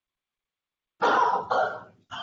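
A person coughing twice in quick succession, starting about a second in.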